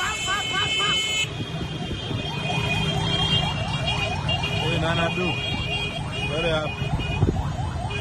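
Motorcade street traffic of motorbikes and cars: engines running, horns sounding in long blasts with breaks, and an electronic siren chirping rapidly in short rising whoops, several a second, over crowd voices.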